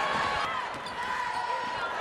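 A basketball being dribbled on a hardwood court during live play, over steady arena background noise.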